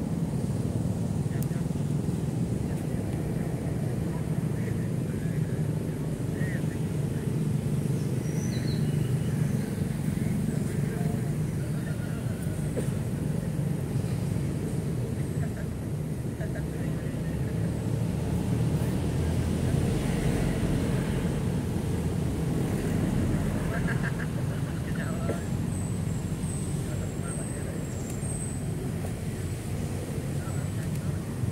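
Steady low rumble of distant road traffic, with faint indistinct voices and a few short high bird chirps near the end.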